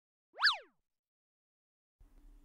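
A single short cartoon sound effect, a quick pitch glide that sweeps up and then straight back down, about half a second in.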